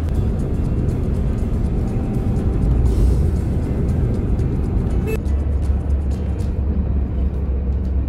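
Music playing over the steady low rumble of a car driving on a road, heard from inside the cabin.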